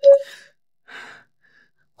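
A woman's short, sharp vocal sound right at the start, then a breathy gasp about a second in.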